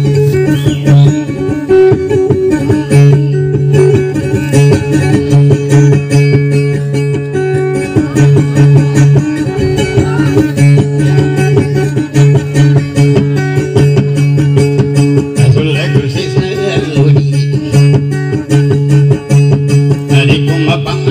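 Live dayunday music: an acoustic guitar and a small long-necked stringed instrument play a steady, repeating strummed and plucked accompaniment, with a low bass pattern that pulses throughout.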